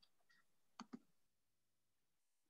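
Near silence, with two faint sharp clicks about a second in, a fraction of a second apart.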